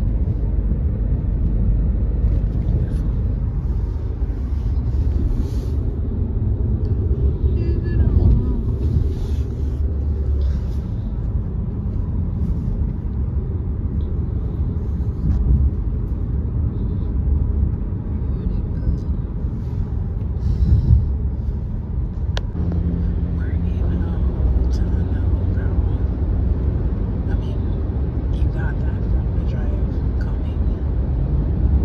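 Road noise inside a moving car's cabin: a steady low rumble of tyres and engine.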